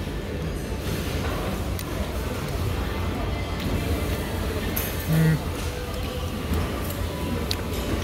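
Busy restaurant background: music and distant diners' voices over a steady low hum. About five seconds in there is a brief low hummed sound, the loudest moment.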